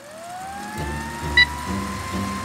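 Film projector sound effect: a motor whine that rises in pitch and settles into a steady tone, with a short high beep about one and a half seconds in, as on a film countdown leader.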